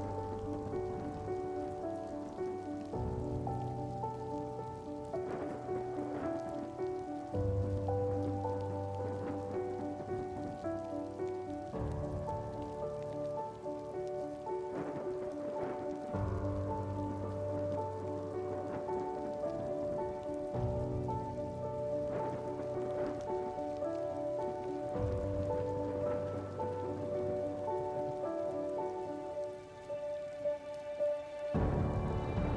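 Steady rain pattering, laid over calm background music of sustained chords whose low bass note changes about every four and a half seconds.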